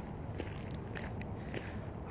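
Faint footsteps on a bush track, a few soft crackling ticks over quiet outdoor background noise.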